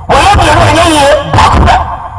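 A man speaking loudly into a microphone over a public address system, in two quick phrases.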